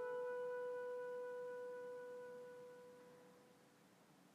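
The last held piano note of a piece, one steady pitch with its overtones, dying away slowly until it is almost gone about three and a half seconds in.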